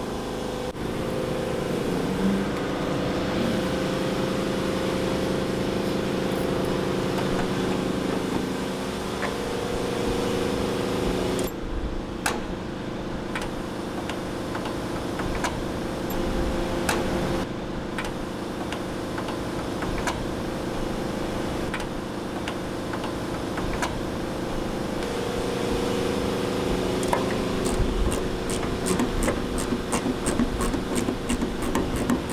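Steady machine hum holding several pitches, under light clicks and metal taps as the flap bellcrank linkage of a Beechcraft Bonanza is worked by hand. Near the end comes a run of quick, regular ticks.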